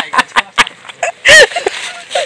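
A quick run of sharp clicks and knocks, then a short vocal sound about halfway through.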